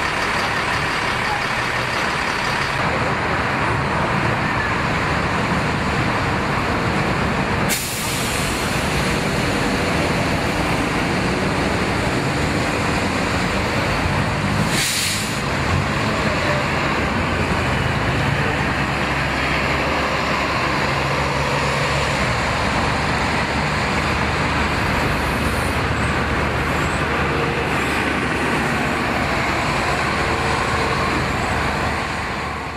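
City street traffic with heavy buses running. A sharp click comes about eight seconds in, and a half-second air-brake hiss about halfway through.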